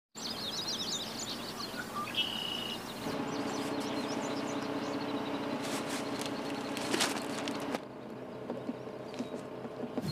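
Birds chirping outdoors for the first few seconds. From about three seconds in a steady low hum with scattered clicks and knocks of gear being handled at a car's open hatch, which cuts off abruptly near eight seconds.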